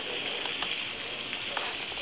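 Tomatoes, spinach and chopped hot dog sizzling in olive oil in a frying pan: a steady hiss with a few small crackles.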